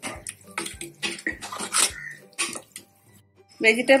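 A metal ladle stirring vegetables and dal in an aluminium pressure cooker, with wet sloshing and irregular clinks and scrapes of the ladle against the pot. It stops about two and a half seconds in.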